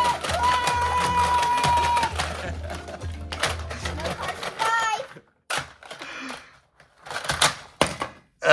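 Plastic toy playset, a Hot Wheels Crunch Car Volcano, being shaken and knocked over. Its plastic pieces give a run of sharp clacks and knocks in the second half. Before that comes a long held tone over a pulsing low rumble, and a short vocal cry about four and a half seconds in.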